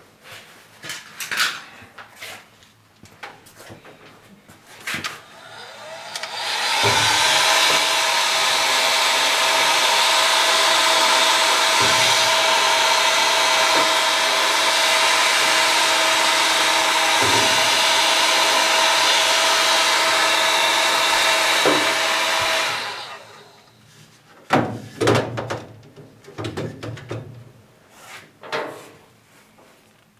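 Heat gun running steadily for about sixteen seconds, a constant whine over rushing air, heating clear plastic tubing to soften it. It switches on about seven seconds in and off about sixteen seconds later, with scattered handling knocks and clicks before and after.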